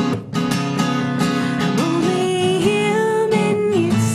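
Acoustic guitar strummed steadily in a live song, chords ringing under regular strokes, with a brief dip in loudness just after the start.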